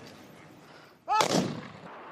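A single rifle volley from an honor guard's funeral rifle salute: after a faint first second, one sudden sharp crack about a second in that dies away over about half a second.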